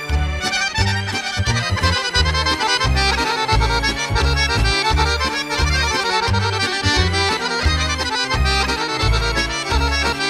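Serbian kolo dance tune played on accordion: quick runs of melody over a pulsing bass accompaniment with a steady, even beat.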